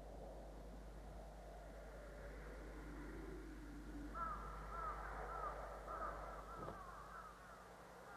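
A crow cawing in a run of short, repeated calls, about two a second, starting about four seconds in. The calls are faint over a steady low hum and hiss.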